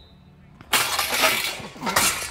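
Football linemen hitting a padded steel blocking sled: a sudden loud clattering crash of pads and frame about two-thirds of a second in, fading over the next second.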